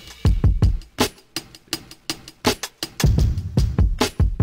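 A self-made hip-hop drum loop playing back in FL Studio, time-stretched in stretch mode: deep kick drums whose pitch drops after each hit, snare strikes and busy hi-hats in a steady rhythm.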